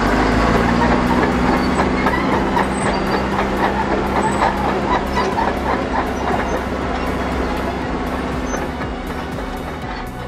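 Caterpillar D4H-LGP crawler dozer on the move, its 3304 four-cylinder diesel running under a dense rapid clatter and squeal of the steel tracks and undercarriage. The sound eases off slightly toward the end.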